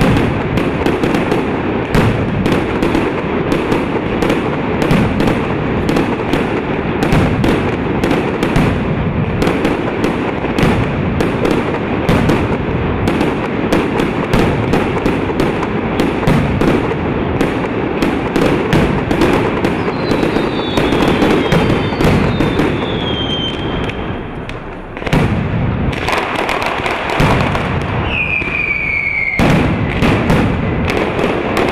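Mascletà firecrackers going off in a rapid, continuous barrage of bangs. Falling whistles cut through in the last third, and the barrage briefly eases off before the bangs pick up again.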